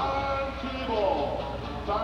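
Arena music over the public-address system, with held notes and a voice over it, played to celebrate a home-team goal.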